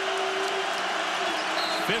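Basketball arena crowd noise, loud and steady, with a long held note in it for the first part, and a ball being dribbled on the hardwood court.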